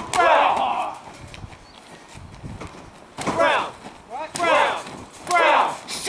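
Wordless yells in four short bursts, the first and loudest at the start, with a few light thuds in between.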